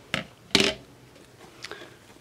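A sheathed fixed-blade knife set down on a wooden tabletop: two short knocks about half a second apart, the second louder.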